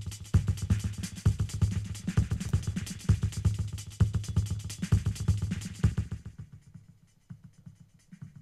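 A programmed drum beat played back from a DAW's step sequencer: a heavy kick drum with sharper drum hits over it. It stops about six seconds in, leaving only a faint tail.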